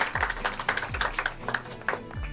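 A few people clapping in scattered, irregular claps over background music with a deep drum beat that drops in pitch about once a second.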